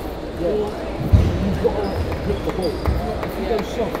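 Table tennis rally: a run of sharp clicks as the ball strikes bats and table, starting about a second in. Two low thumps stand out, the louder one just after the clicks begin. The chatter of a busy hall runs underneath.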